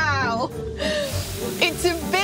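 A woman laughing and exclaiming, then talking again near the end, over background music.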